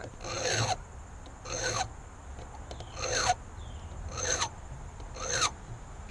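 A hand file drawn across a brass key blank clamped in a small vise: five short strokes about a second apart. It is filing down the fifth cut position, where the lock's pin left a mark during key impressioning.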